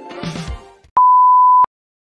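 Outro music ends with a few low thuds in the first half second. Then a single loud, steady electronic beep at one pitch lasts under a second, switching on and off abruptly with a click.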